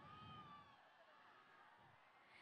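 Near silence, with one faint, high, drawn-out call that rises and falls in the first second.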